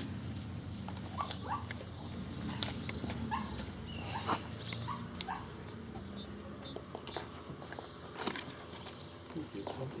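Gordon Setter puppy giving short, high whines, about seven squeaks in the first half.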